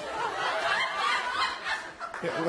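Studio audience laughing, many voices together, swelling about a second in and dying down near the end.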